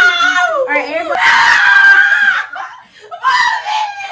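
Children and teenagers screaming and laughing at the shock of ice-cold bath water, with one long high-pitched scream about a second in and a shorter cry near the end.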